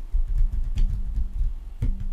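Typing on a computer keyboard, heard as a run of irregular low thuds with a few sharper key clicks.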